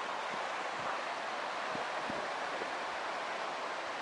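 Steady hiss of ocean surf washing onto a sandy beach, with a little wind on the microphone.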